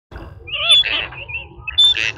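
Gadwall and teal ducks calling: a string of short, high whistles and nasal calls, loudest about three-quarters of a second in and again near the end.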